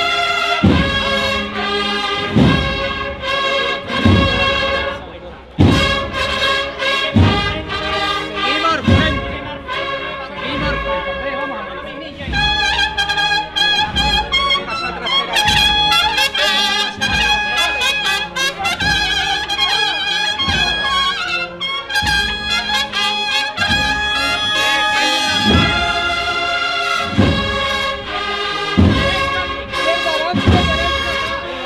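A cornet and drum band (banda de cornetas y tambores) playing a Holy Week processional march. The cornets hold sustained chords over a heavy bass-drum beat struck about every second and a half.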